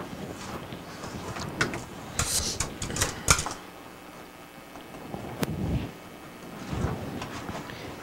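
A steel cup pressing graham cracker crumbs into a metal cake pan, with scattered scrapes and light metal-on-metal knocks; the sharpest knock comes a little over three seconds in.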